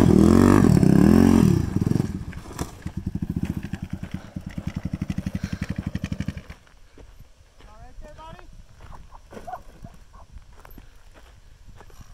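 A quad ATV engine revving up and down as the four-wheeler spins in loose dirt, then dropping to an idle of quick, even putts that cuts off suddenly about six and a half seconds in. Faint voices follow.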